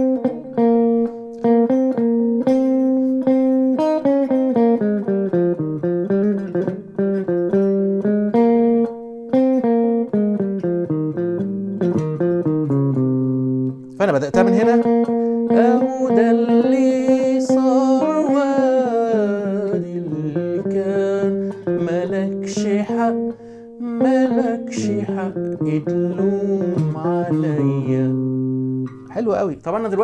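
Electric guitar playing a slow single-note melody in A-flat major, note by note, with a man's voice along with it.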